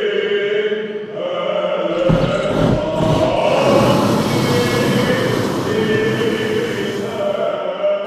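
Choral chant music with held voices. About two seconds in, a hot-air balloon's propane burner starts firing with a steady rushing blast that lasts about five seconds over the singing.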